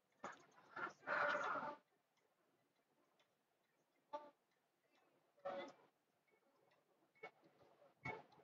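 Near quiet, with a few faint, irregularly spaced clicks and short scuffs; the longest scuff comes about a second in.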